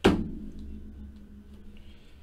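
One sharp thunk on the tabletop right at the start, ringing briefly as it dies away, followed by faint handling of a stack of trading cards.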